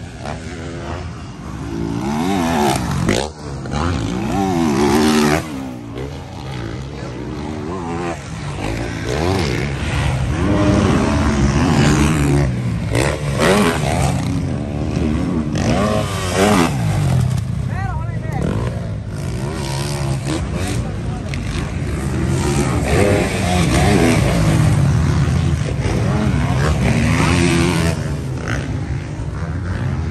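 Motocross bikes racing on a dirt track, their engines revving hard and dropping back again and again as riders accelerate out of turns and over jumps. The pitch keeps rising and falling, with more than one bike heard at once at times.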